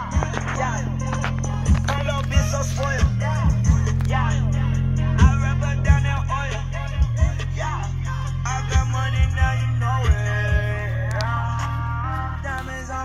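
A song with heavy, sustained bass and repeated drum hits playing loudly through a Honda Helix scooter's aftermarket stereo: two handlebar-mounted speakers and an underseat subwoofer.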